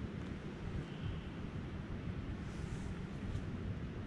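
Wind buffeting the microphone: a steady low rumbling noise.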